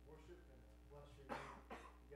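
A person coughs twice in quick succession about a second and a half in, over faint, distant speech.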